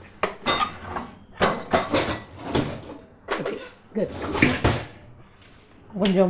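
Kitchen pots, pans and utensils clattering and clinking in a series of irregular sharp knocks.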